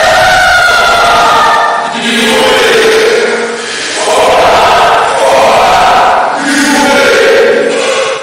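A short spoken vocal clip layered on itself 16,384 times, merging into a loud, dense wall of overlapping voices that sounds like a crowd chanting, rising and falling in repeated swells.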